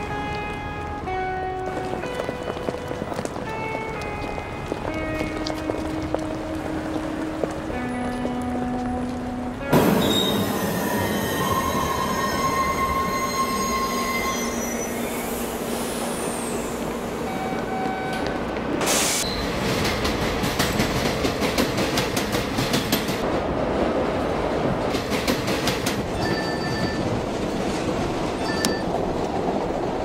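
Music of held notes that change pitch every second or so. About ten seconds in, a subway train's sound cuts in suddenly: wheels squealing on the rails, then the train running with its wheels clattering over the rail joints.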